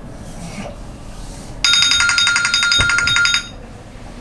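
Electronic timer alarm going off at the end of a 15-minute countdown: a fast-pulsing chime of several high tones. It cuts off suddenly after about two seconds.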